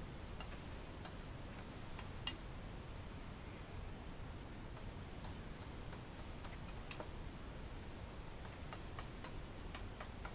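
Faint, irregular light clicks of a knife blade touching a glass mixing bowl as sourdough pizza dough is cut into pieces, over a low steady hum.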